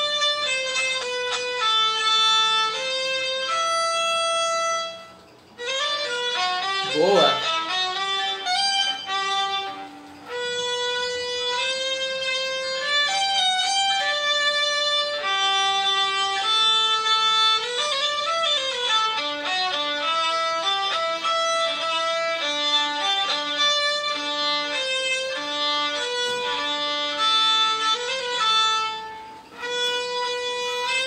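Solo violin played with vibrato: sustained bowed notes in phrases, with short breaks about five and ten seconds in.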